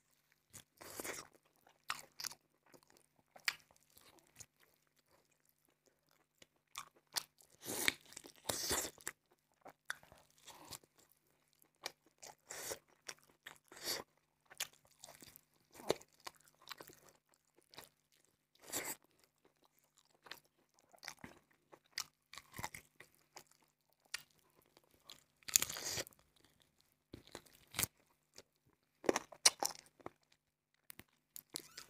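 Close-miked eating by hand: a man biting into a curry-coated fried chicken leg with rice and chewing, with crunches and wet mouth sounds coming in irregular bursts. The loudest bursts come about eight and twenty-six seconds in.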